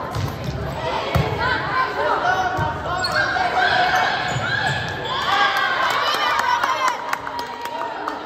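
A volleyball rally on a hardwood gym court: sharp knocks of the ball being hit and landing, the loudest about a second in, under players and spectators calling out, echoing in a large gym.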